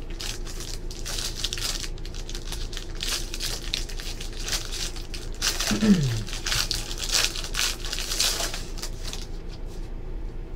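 Trading-card pack wrapper of a 2013 Panini Black football hobby pack crinkling and tearing as it is ripped open by hand, a dense run of crackles, with a brief falling hum about six seconds in.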